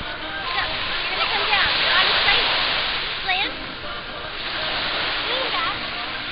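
Small sea waves breaking and washing up on a sandy shore, a steady rush of surf, with distant voices of people in the water calling out over it.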